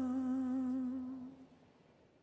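Closing held note of a show's intro theme music, one long sustained tone with a slight wobble that fades out about halfway through.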